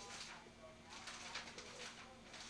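Newspaper pages rustling as they are handled: a short crackle at the start and a longer one about a second in.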